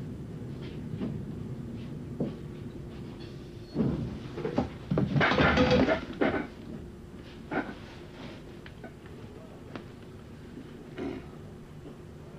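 Steady low hum inside a train compartment, with scattered knocks and clothing rustle as a sleeping passenger stirs and sits up. A louder burst of noise comes about five seconds in.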